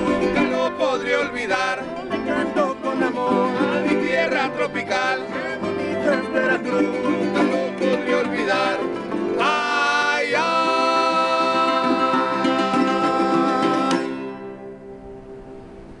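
Small Mexican folk guitars strummed in a lively, fast rhythm. After about nine seconds a rising note leads into a long held final chord, which fades away over the last couple of seconds.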